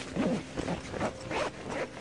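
Zipper on a wingsuit being pulled up in several short, quick strokes, with fabric rustling.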